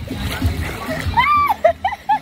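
Water rushing and splashing as a person rides down a water slide, with a high rising-and-falling whoop about a second in, followed by short bursts of laughing.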